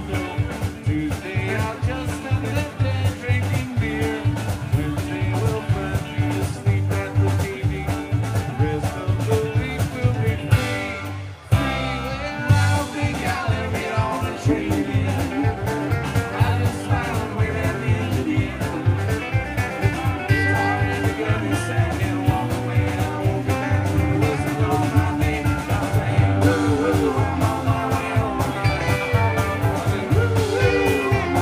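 Live band playing an upbeat song with guitars over a steady beat. About eleven seconds in, the band stops for a moment and then comes back in together.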